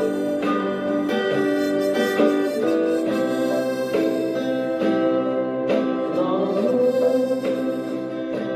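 Guitar strumming chords under a harmonica playing a slow melody line.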